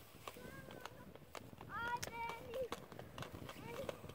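Inline skate wheels rolling and clicking irregularly over a rough asphalt lane, with short high-pitched children's calls in the middle and again near the end.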